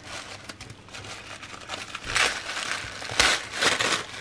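Tissue-paper wrapping rustling and crinkling as hands unfold it, with louder crinkles about two seconds in and again a second later.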